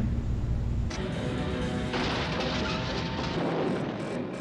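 A film soundtrack cuts in about a second in, after a brief low room hum: music with held tones, joined from about two seconds in by a loud noisy rush.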